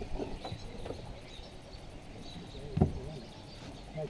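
A single sharp thump in the metal fishing boat a little under three seconds in, over a low steady background rumble.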